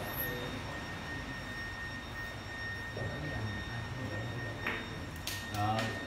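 Billiard hall room tone: a steady hum with a thin, constant high-pitched tone, and a couple of sharp clicks near the end, with brief murmured voices just before it ends.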